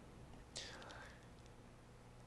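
Near silence: room tone, with one faint, brief hiss about half a second in.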